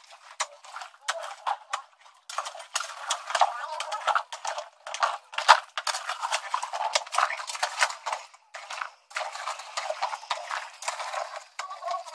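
A rapid, irregular clatter of sharp clicks and knocks, with voices at times.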